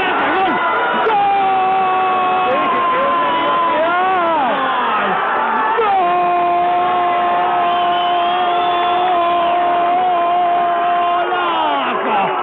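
A radio football commentator's drawn-out goal cry, a shouted "gol" held on one steady note. After a shorter held note and a break, the longest stretch runs for about five seconds.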